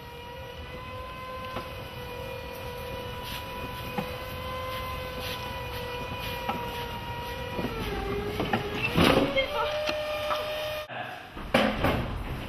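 A steady electric motor whine with several overtones, which dips in pitch about eight seconds in and then settles a little higher, with a louder rattle around nine seconds. It cuts off abruptly near the end, followed by a few knocks.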